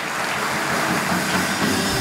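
Studio house band playing a short live musical break with drum kit.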